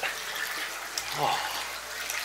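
Hot spring water sloshing and trickling in a soaking tub as a person moves in it close to the microphone, a steady watery noise.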